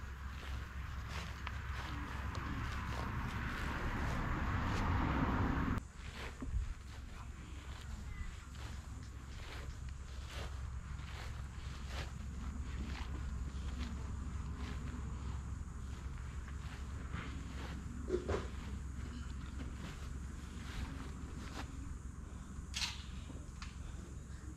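Footsteps: soft, irregular steps over a steady low rumble. A hiss swells over the first few seconds and cuts off abruptly about six seconds in.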